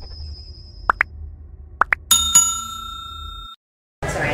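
Subscribe-button intro sound effects: two pairs of quick rising pops like button clicks, then a bright bell chime struck twice that rings on and cuts off suddenly.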